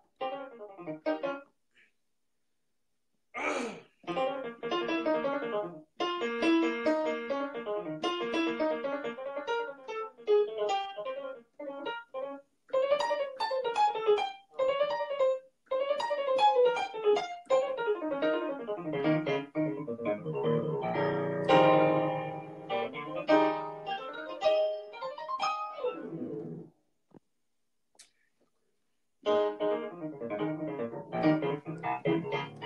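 Electronic keyboard played with a piano sound: dense chords and quick runs, with a fuller, louder chord about two-thirds of the way through. The playing pauses briefly about two seconds in and again near the end.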